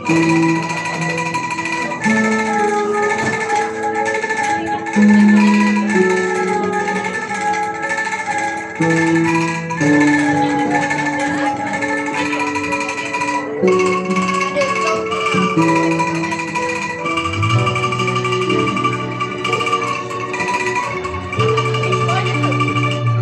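A melody played on a frame-mounted set of bamboo angklung tubes, each note held and ringing before the next, changing about once a second. A deeper bass part joins about three-quarters of the way through.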